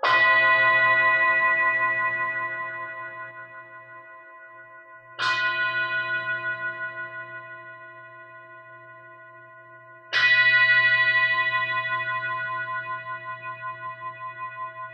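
A singing bowl struck with a mallet three times, about five seconds apart; each strike rings out in a rich chord of tones that fades slowly with a gentle wavering pulse.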